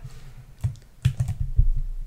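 A few light computer input clicks: one about half a second in, then a quick cluster of several about a second in, as the password text is selected and copied.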